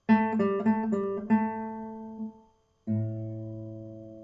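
Acoustic guitar playing a short phrase of five plucked notes, about three a second, that ring out. After a brief pause, a low chord is struck about three seconds in and left to ring and fade.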